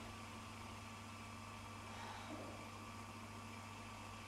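A quiet pause filled only by a steady low electrical hum and hiss, the room tone of the hall and recording chain.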